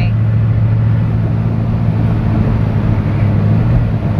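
Steady low drone of a car heard from inside the cabin, with the hiss of its tyres running through standing water on a flooded road.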